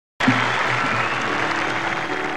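Audience applause cutting in suddenly, with the band's opening instrumental notes sounding underneath.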